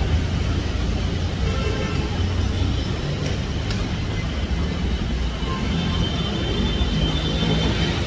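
Steady city street traffic noise: a continuous low rumble of passing vehicles with a few faint higher tones.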